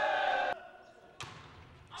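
A brief steady tone cuts off about half a second in. About a second later a single sharp thud with an echoing tail is heard, a volleyball bounced once on the gym floor before a serve.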